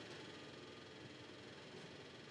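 Near silence: only a faint, steady background hiss.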